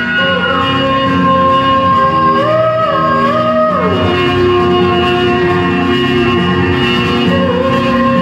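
Music for the dancing: a held lead melody that slides between notes, dropping to a lower note about four seconds in, over sustained chords.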